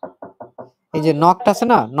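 A quick run of knocks, about five a second, imitating someone knocking at a door, then a man's voice about a second in.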